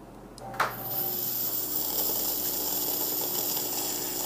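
A fog machine starting up with a click about half a second in, then running steadily: a constant hiss with a faint hum as it pushes fog through a funnel and split aquarium airline tubing.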